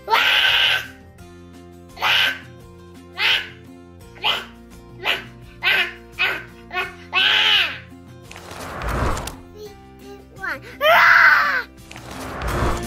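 A young child shouting pretend lion roars, a string of short ones about once a second, then a longer, louder roar near the end, over background music.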